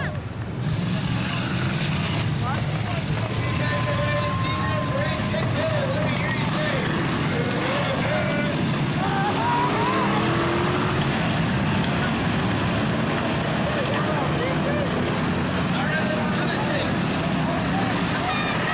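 A pack of old street cars racing together on a dirt oval, their engines running hard in a steady continuous drone. Indistinct people's voices from the stands sit over the engine noise.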